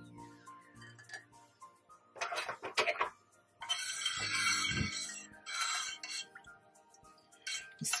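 Clinks and knocks of a stainless steel pot and a plastic strainer against a glass mug, then tea pouring through the strainer into the mug for about two and a half seconds from around the middle. Light background music plays throughout.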